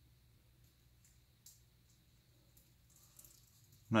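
Near silence: quiet room tone with a couple of faint, brief ticks, the loudest about one and a half seconds in.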